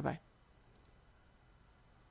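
The tail of a spoken "bye-bye", then near silence with two faint, quick clicks in close succession a little under a second in.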